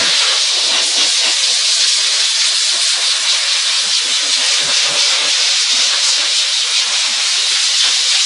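Steam car-wash machine's hand wand jetting steam onto a car door's interior panel: a loud, steady hiss.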